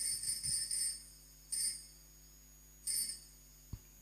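Altar bells rung at the elevation of the chalice during Mass: a continuous jingling that stops about a second in, followed by two short rings about a second and a half apart.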